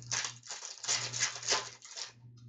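Trading cards being flipped and slid against one another in the hands: a quick run of short, sharp rustling flicks, over a steady low hum.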